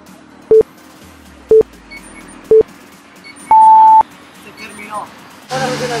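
Interval timer counting down the end of a work interval: three short beeps a second apart, then one longer, higher beep that marks the interval's end.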